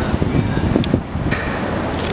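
Wind buffeting a handheld camera microphone over city street noise, with a couple of short sharp clicks about a second in.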